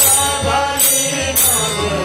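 Hindu devotional bhajan: harmonium and tabla accompany chant-like singing, with a bright struck beat keeping time roughly every 0.6 to 0.8 seconds.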